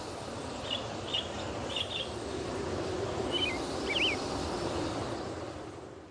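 Several short bird chirps over a steady background hiss, which fades out near the end.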